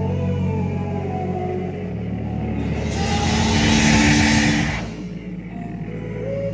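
Live band music from electric guitars and a drum kit, with sustained low notes. A loud, hissing wash swells up about halfway through and stops abruptly near the end.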